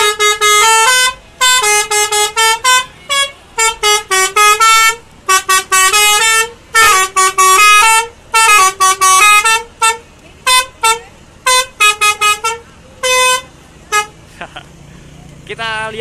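Tour bus 'basuri' telolet horn, a multi-trumpet melodic horn, playing a tune of short notes that step up and down, blasted in rapid bursts and falling silent near the end. Loud.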